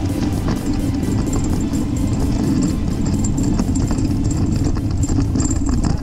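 Hang glider's wheeled base bar rolling and bouncing over grass, a loud rattling rumble, under background music with a steady beat.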